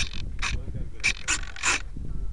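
Short mechanical whirring bursts, about five in two seconds, from on board the RC model plane, typical of its servos driving the control surfaces.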